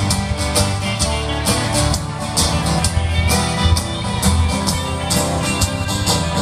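Live band playing an instrumental break between sung verses: electric bass, guitar and drum kit, with a steady beat of drum and cymbal hits.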